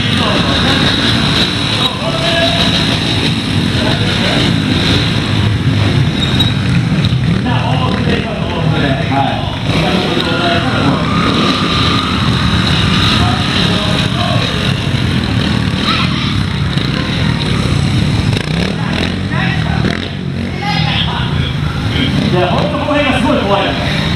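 Trials motorcycle engines running as riders ride them on the rear wheel, mixed with voices.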